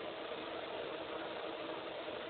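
Steady, even hiss of a broadcast audio feed in a gap in the commentary, with a faint steady hum underneath.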